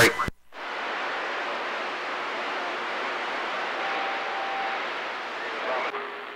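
CB radio receiver static: a transmission cuts off abruptly, followed by a short gap and then a steady hiss from the open channel. A faint short steady tone comes through about four seconds in.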